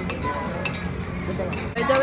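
Metal forks and spoons clinking against ceramic plates and bowls while eating, a few sharp separate clinks over a steady low background hum of the dining room.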